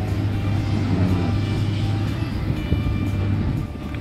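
Steady low engine hum from heavy piling machinery running, with background music over it.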